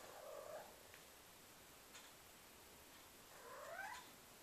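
Cat making two faint short calls: one at the start, and one near the end that rises in pitch.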